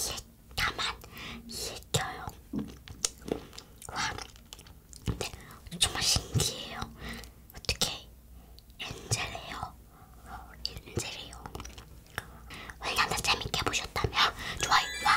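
Soft talking mixed with wet chewing and mouth clicks from eating angel-hair candy, spun strands of caramelized sugar.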